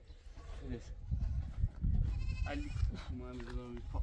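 Sheep bleating, a few drawn-out calls in the second half, over a low rumbling noise.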